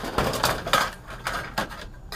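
Clatter of hard plastic and sheet-metal TV parts as they are handled, lifting the plastic stand base off a stripped LCD TV: a run of irregular knocks and rattles.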